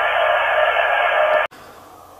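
An RS-918 HF SDR transceiver's speaker giving a steady hiss of 20-metre band noise while it receives WSPR. The signals lie below the noise floor and are not heard. The hiss cuts off suddenly about one and a half seconds in, leaving faint room tone.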